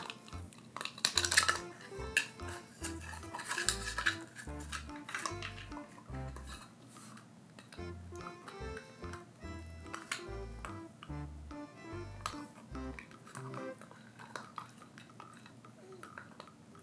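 A puppy gnawing a hard dried cow hoof: sharp clicks and scrapes of teeth on the hoof, busiest in the first few seconds. Background music with a bass line plays under it and thins out near the end.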